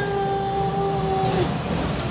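A voice holding one long, steady sung note, a drawn-out sing-song "hello", for about a second and a half before it stops.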